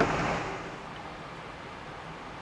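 A front door handled as someone goes out, with a single sharp knock at the start that dies away within half a second, followed by a faint steady hiss of room tone.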